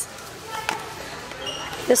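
Handling of a boxed product taken down from a pegboard display hook, with one light click under a second in, over quiet store background.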